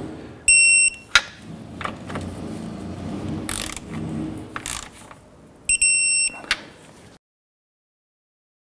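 Electronic torque wrench beeping twice, each beep about half a second long and the two about five seconds apart, as each lower engine-mount bolt reaches its 37 ft-lb setting. A click follows each beep, and the wrench's working noise runs between them.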